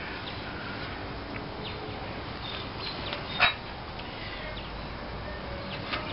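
Faint short bird chirps over a steady outdoor background, with one short, sharp louder sound about three and a half seconds in.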